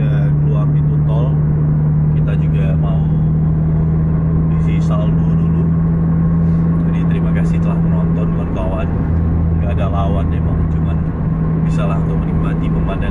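Car cabin at highway cruising speed: a steady, loud low hum of engine and tyre road noise that holds constant, with faint talking over it.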